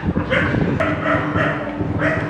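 A dog barking: a few short barks about half a second apart.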